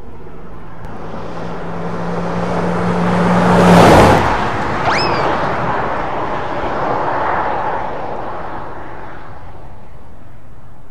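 A motor vehicle passing by, its noise swelling to its loudest about four seconds in and then fading slowly, with a steady low hum that stops at the peak. A brief high squeal sounds about a second after the peak.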